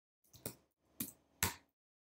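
Keystrokes on a computer keyboard: four separate sharp clicks, the last two louder.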